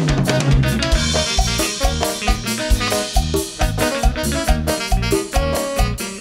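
Live band playing an instrumental passage of tropical dance music with a steady beat: drum kit, congas and bongos, electric guitar, bass guitar and keyboard, with no singing.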